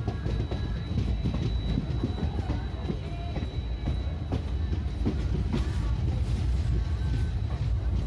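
Passenger train running, heard from the open doorway of a moving coach: a steady low rumble with irregular clicks and knocks of the wheels on the track.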